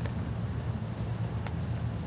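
A few faint clicks as leather breast-collar tack and its hardware are handled and threaded through a saddle loop, over a steady low rumble.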